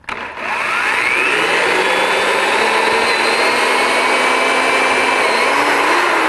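Power drill boring a hole about an inch deep into a bass boat's transom: the motor whines up to speed in the first second, then runs steadily under load, its pitch shifting slightly near the end.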